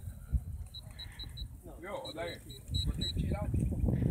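An electronic beeper sounding short high beeps, about five a second, in two runs: four, then a pause, then six. Wind rumble on the microphone runs underneath.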